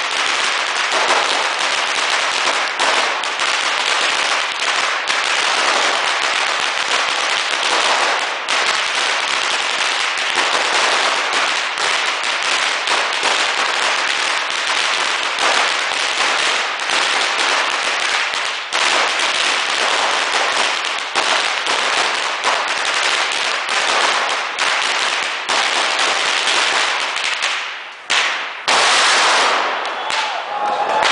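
A long string of red firecrackers burning down, a dense, continuous crackle of rapid bangs. Near the end it drops off briefly, then comes back in its loudest burst, about a second long.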